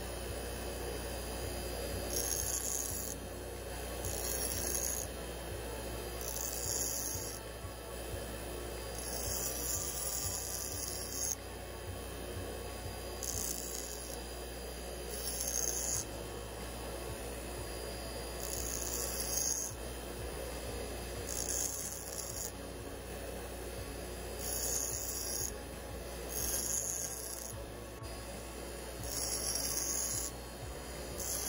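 Bench grinder running with a steady low hum, while the tip of a fuel injector is pressed against the wheel in short grinding hisses about every couple of seconds as it is turned to grind off the welded-on cap.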